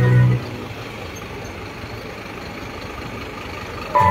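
Street traffic noise: a Scania truck driving slowly past with its engine running, a steady low noise without clear tones.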